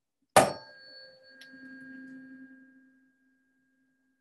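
A tuning fork tuned to middle C, struck once with a sharp click about half a second in, then ringing with a steady tone that fades out by about three seconds. A faint tick comes partway through the ring.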